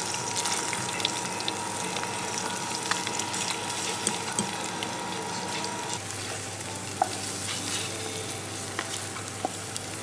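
Eggs frying in a nonstick pan: a steady sizzle with scattered sharp pops, and a metal fork stirring the eggs at first.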